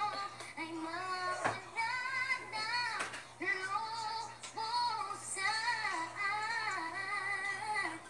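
A high female voice singing a melody, with long held notes that bend in pitch.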